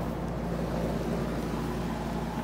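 Outdoor central air-conditioning units running: a steady fan whoosh over a low, even hum.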